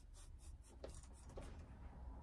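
Near silence, with faint rustling and a few small ticks as a person seated at a piano turns and settles her hands on the keys.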